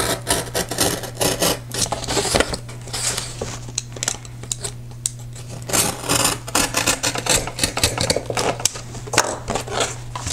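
Craft knife slicing through scored corrugated cardboard along the fold, a run of quick, uneven rasping strokes that ease off for a couple of seconds mid-way.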